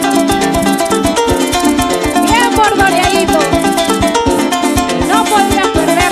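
Venezuelan llanero music played by a band: a harp playing fast plucked runs over a steady beat of maracas and bass.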